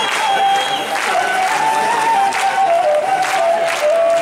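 Live folk band playing an instrumental passage, with the laouto plucked under a held melody line that steps down in pitch, and audience clapping and crowd noise mixed in.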